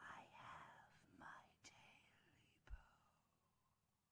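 A faint, eerie whispering voice that fades away, with a sharp click and a soft low thump partway through.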